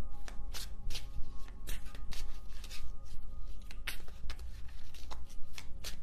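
A deck of tarot cards being shuffled by hand: an irregular run of short card flicks and riffles, about two a second. Soft background music with held tones sits underneath.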